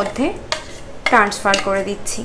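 A metal spoon scraping and clinking against a stainless-steel mixer-grinder jar while thick ground masala paste is knocked out into a glass bowl. There are sharp knocks about half a second and a second in.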